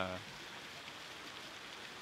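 A spoken word trails off just at the start, then a pause filled only by steady, even background hiss.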